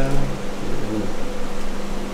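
Steady mechanical hum of room ventilation, with the end of a spoken word in the first moment.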